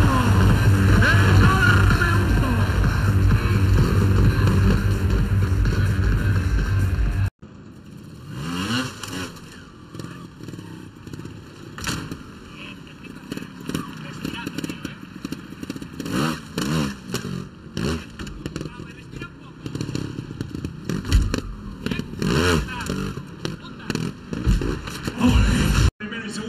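Loud arena noise for about seven seconds, then an abrupt cut to a trials motorcycle's engine revving in short rising and falling bursts, with sharp knocks as the bike hops onto and lands on obstacles.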